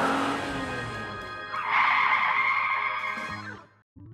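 Background music with an added cartoon car sound effect for a toy van driving. The effect gets louder and noisier from about halfway in, then fades out just before the end.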